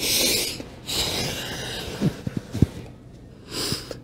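A man breathing hard and forcefully through his mouth, three long breaths, while straining to hold a plank on an exercise ball. A few brief low knocks come in the middle.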